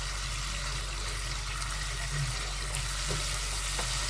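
Tuna pieces in chili balado sauce sizzling steadily in a frying pan.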